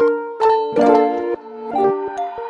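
Background music: a plucked-string melody, several notes a second, each note ringing briefly.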